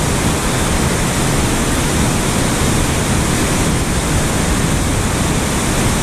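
Steady rush of fast, turbulent creek water: an even, loud hiss with no break and a restless low rumble underneath.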